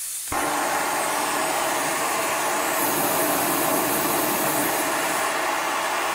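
BRS titanium backpacking stove burner lit on propane from a one-pound bottle through an adapter. The flame catches about a third of a second in, then burns with a steady rushing hiss. Propane's higher bottle pressure gives a bigger flame than isobutane.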